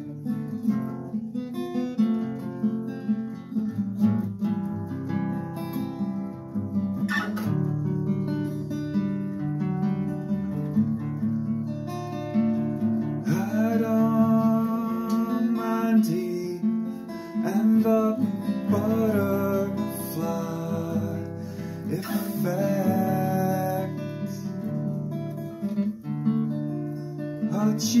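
Acoustic guitar strummed in steady chords, with a man's singing voice coming in over it about halfway through.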